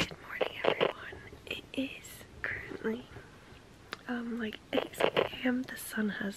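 A woman speaking quietly, much of it whispered.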